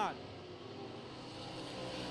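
Limited late model race cars' V8 engines running around the dirt oval, a steady drone that grows slightly louder toward the end.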